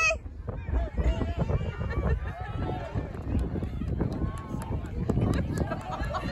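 Crowd of spectators in the stands: many voices talking and calling out at once, none clearly worded.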